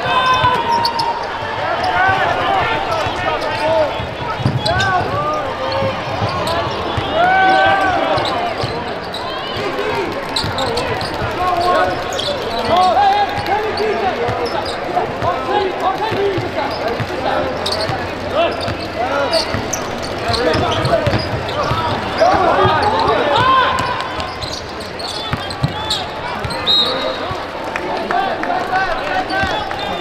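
Live basketball game sound in a large arena: a basketball bouncing on the hardwood court amid indistinct calls and chatter from players and spectators.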